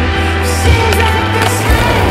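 Skateboard on a metal flat bar and rolling on asphalt, with a few sharp clacks of the board, heard over loud background music.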